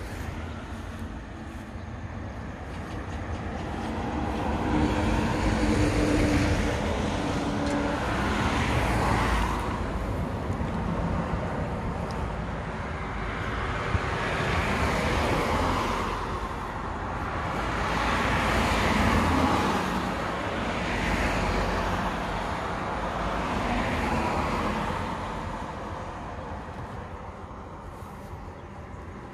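Road traffic: several cars pass one after another, each one swelling up and fading away. A single sharp click comes about halfway through.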